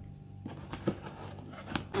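Faint handling sounds, a few light taps over a steady low hum.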